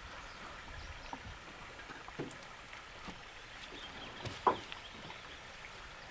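Quiet river ambience: a faint, steady wash of water and air noise, with a few light knocks, the clearest about two seconds and four and a half seconds in.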